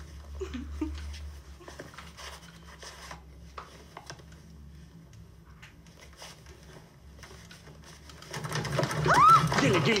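Faint rustling and a few light clicks over a low room hum, then, about eight seconds in, a woman's loud cry that slides up and back down in pitch as she loses her footing.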